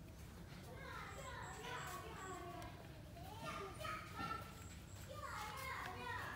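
Faint children's voices chattering and calling, several at once, starting about a second in.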